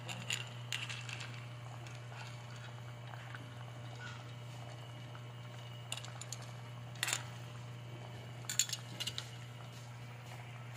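A metal ladle clinking against a metal pot and clam shells as it stirs and scoops clam soup: a few scattered short clinks, with a small cluster near the end, over a steady low hum.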